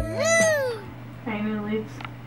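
A child's high, buzzy sung note that rises and then falls in pitch, cutting off under a second in. About a second and a half in comes a brief voice.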